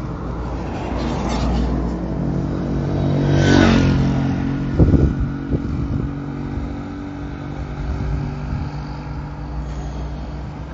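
Road traffic on an asphalt street: a steady engine hum, with a car passing close by and loudest about three and a half seconds in.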